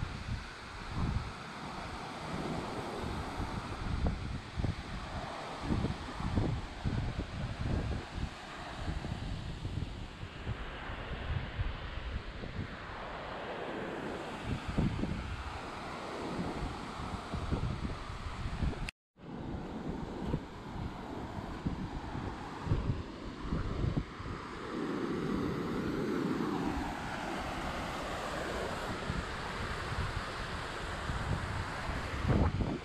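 A waterfall rushes steadily into a pool, with wind buffeting the microphone in irregular low gusts. The sound cuts out for a moment about two-thirds of the way through.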